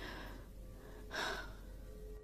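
A woman's breathing, with one sharp intake of breath, a gasp, about a second in.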